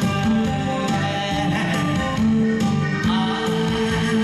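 Live song performance: a male singer singing into a handheld microphone over recorded backing music, with held notes.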